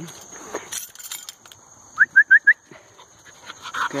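Four quick, high, rising whistled chirps made by the handler about two seconds in: a recall cue calling the dog back to her.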